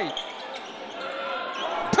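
Basketball arena crowd noise during live play, with one sharp bang near the end from the ball and rim on a putback dunk.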